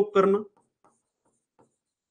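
A man's voice finishes a word, then faint short scratching strokes of a pen writing on a board, several in quick succession.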